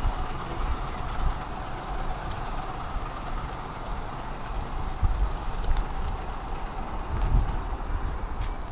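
Steady low rumble of a heavy vehicle in motion, with a few faint high ticks around the middle.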